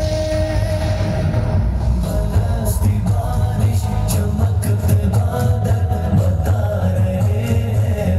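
Recorded music of a Hindi-Urdu devotional song praising God, with held tones and a heavy bass line, and drum strikes coming in about two and a half seconds in.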